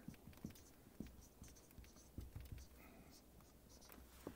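Marker writing on a whiteboard: faint, short scratching strokes.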